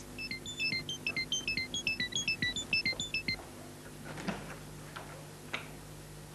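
A quick electronic beeping tune: rapid short high notes, about eight a second, stepping up and down in pitch for about three seconds, then stopping. Two faint knocks follow near the end.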